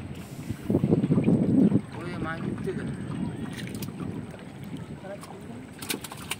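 Wind buffeting the microphone in the open air on a small wooden boat, loudest for about a second near the start, over a steady low background; a brief faint voice is heard in the middle.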